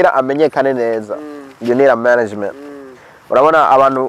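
A man speaking close to the microphone, in phrases broken by short pauses; the words are not English, or the recogniser could not make them out.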